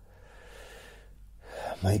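A man's soft breath in a pause between slow spoken phrases. His voice resumes near the end.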